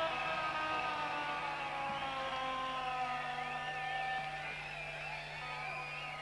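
Electric guitar notes held and ringing through the stage amplification, several tones sustained and slowly wavering in pitch, over a steady low hum.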